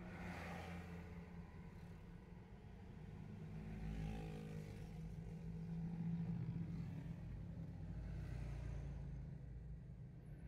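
Slow-moving road traffic heard from inside a car: a steady low engine hum, with motorcycles and other vehicles passing close by. There are louder swells about a second in, around four seconds and again around six to seven seconds.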